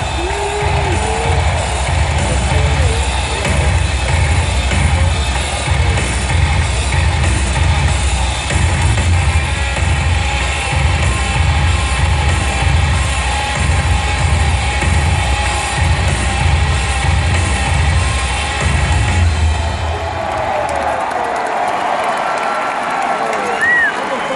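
Music with a heavy pulsing bass beat played loud over an arena PA system, with a crowd cheering under it. The music stops about twenty seconds in, leaving the crowd's noise.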